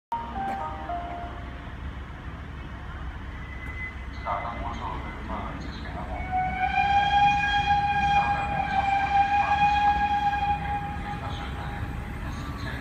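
A steam locomotive whistle blows one long, steady note from about six seconds in and holds it for about five seconds. Underneath is the low rumble of an approaching Siemens Desiro diesel railcar.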